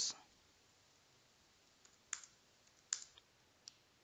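Four faint, sharp clicks of computer keys or mouse buttons, spaced over the second half, as a running node process is stopped in the terminal.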